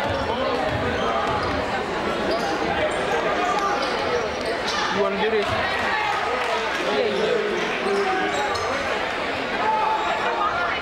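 A basketball being dribbled on a hardwood gym floor, with voices from the players and spectators carrying through the gym.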